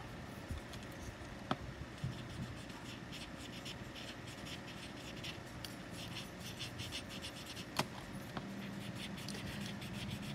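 Paper tortillon (blending stump) rubbing graphite shading into a paper tile: faint, repeated soft scratching strokes, with a couple of light clicks.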